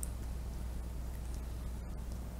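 Steady low electrical hum with hiss in a quiet room, with faint, brief squeaks of a felt-tip marker writing on paper.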